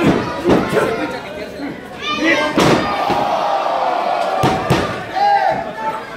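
A wrestling ring's mat takes heavy slams from wrestlers' bodies: a sharp impact right at the start, another about halfway through, and two in quick succession a little later. Spectators shout and call out between and over the impacts.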